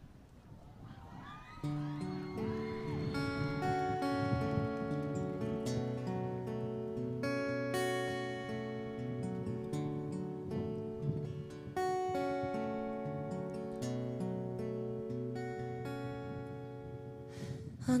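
Acoustic guitar strummed through the instrumental introduction of a slow song, its chords ringing and held. It comes in about two seconds in, after faint crowd noise.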